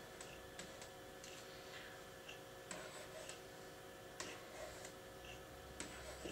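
Faint, irregular clicks of a pen tapping on an interactive whiteboard as digits are written, over a faint steady hum.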